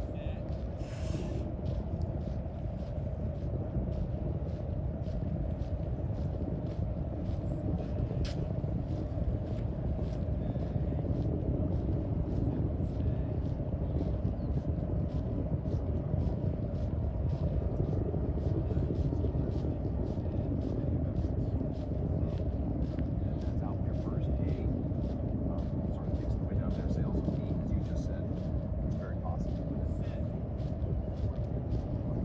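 Footsteps of a person walking on a paved path, about two steps a second, over a steady low rumble of outdoor noise.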